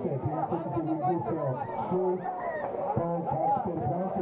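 A man talking continuously, with chatter from people around him.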